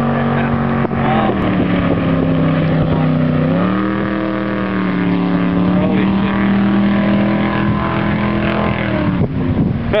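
Jet boat engine running hard as the boat speeds past, a loud steady drone whose pitch drops about a second in, climbs again around three and a half seconds, and sags near the end.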